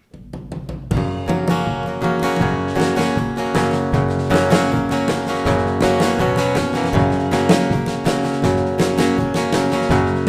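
Live band playing the instrumental intro of a country-flavoured song: strummed acoustic guitar with a drum kit keeping a steady beat. A few opening strokes are followed by the full band coming in about a second in.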